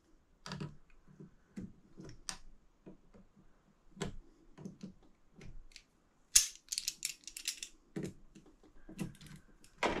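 Irregular light metal clicks and clacks of locking pliers squeezing the retaining clip onto the drive shaft of a Tecumseh 37000 snowblower starter, with a louder run of sharp clicks a little past halfway.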